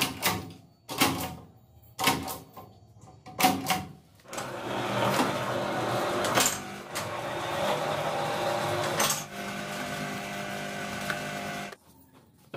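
Notebook-making machines at work: about five sharp mechanical clunks roughly a second apart from a notebook stitching machine, then a steady electric machine running for most of the rest.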